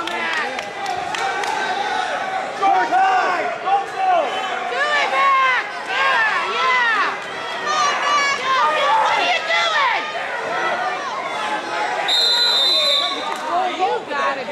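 Crowd of spectators in a gym yelling and shouting, many voices overlapping. A high, steady whistle-like tone sounds for about a second near the end.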